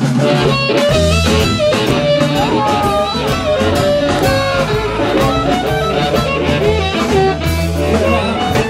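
Live blues band playing between sung lines, with harmonica phrases bending and wailing over acoustic guitar and a steady drum-kit groove.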